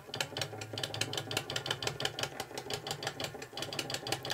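Electric oil-feed pump running, making a rapid, even ticking over a low hum as it pumps waste oil into the stove.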